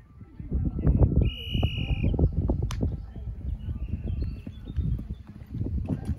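Horse's hooves thudding on turf, an irregular run of dull beats, outdoors with wind on the microphone. About a second and a half in, a short steady high tone sounds for under a second.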